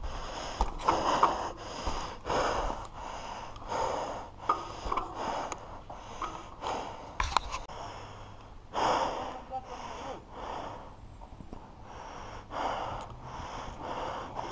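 A downhill mountain biker breathing hard close to the camera microphone, with short gasping breaths about two a second. Under the breathing is the low rumble of the bike running over the dirt track.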